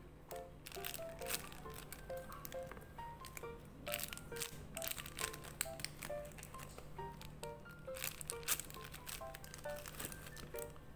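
Plastic bags around handmade paper squishies crinkling and rustling as they are handled and pressed into a plastic storage box, in bursts of crackle, over light background music of short plucked notes.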